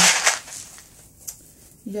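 Short rattle of Nerds candy shifting inside its cardboard box as the box is turned over in the hands, followed by a couple of faint taps on the box.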